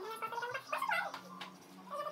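A person's voice making wavering, warbling vocal sounds for about the first second, then quieter, over a faint steady low hum.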